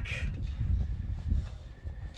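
Wind buffeting the microphone outdoors: a low, uneven rumble that rises and falls in gusts.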